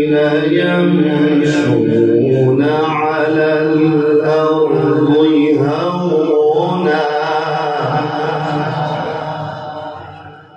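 A man reciting the Quran in the melodic tilawat style, drawing out long held notes that glide up and down in pitch. The phrase trails off and fades near the end.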